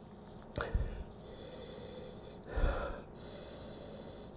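A man sniffing white wine from a stemmed glass: one short, noisy sniff about two and a half seconds in, after a light tap near the start.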